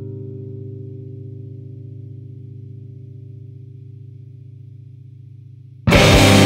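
Screamo/math-rock recording: a single electric guitar chord, played through effects, rings and slowly fades. Near the end the full band comes in loudly with distorted guitars and drums.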